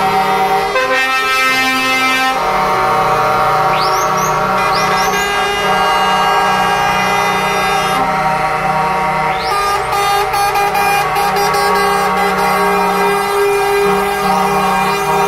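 Truck air horns sounding continuously from a passing convoy of lorries, several horns of different pitches held together, the mix of tones shifting as the trucks go by.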